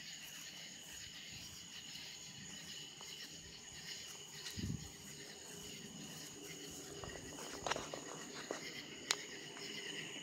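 A steady chorus of night insects chirping, high and continuous. A dull low thump comes about halfway through, and a few sharp clicks and knocks come near the end.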